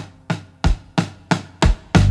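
A drum beats a lone, steady pulse of sharp hits, about three a second, in a break in the song. The full band comes in right at the end.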